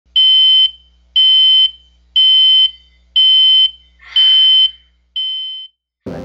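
Electronic alarm beeping at a steady high pitch: six beeps about once a second, each about half a second long, the last one weaker and fading out.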